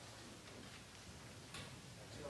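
Faint, scattered hand claps as applause dies away, a few soft claps over quiet room noise.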